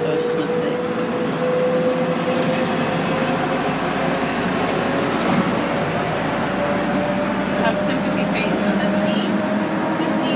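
City transit bus driving along the road, heard from inside at the front: steady engine and road noise with a whine that rises slowly and evenly in pitch.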